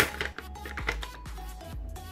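A resealable plastic snack pouch being pulled open at the top, giving a few sharp crinkles and rustles, the loudest right at the start, over steady background music.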